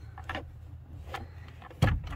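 Handling noise from working under a car's dashboard: faint clicks and rustling, then a single sharp knock near the end.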